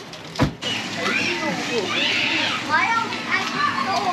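Young children's voices chattering and calling out in high, lively tones, after a short thump about half a second in.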